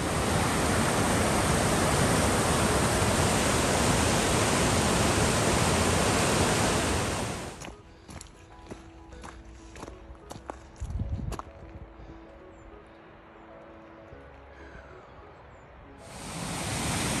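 Fast-flowing rocky beck rushing and tumbling over stones, a loud steady rush that cuts off suddenly about seven and a half seconds in. Then much quieter: scattered light crunches of footsteps on a gravel track, with a brief rumble of wind on the microphone around eleven seconds in.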